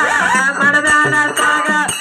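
Live Kannada folk song (dollina pada): a woman singing into a microphone over a harmonium's held notes and hand percussion, her voice gliding up and down.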